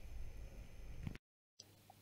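Faint room tone with a low hum, cut off by a moment of dead silence at an edit a little past a second in, then faint room tone again.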